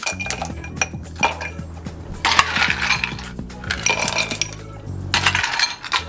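Ice cubes dropped into a stemmed glass, a series of light clinks and clatters against the glass.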